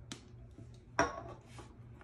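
A Mazola cooking-spray can being handled: a faint tick at the start and a sharper click about a second in, which fades quickly.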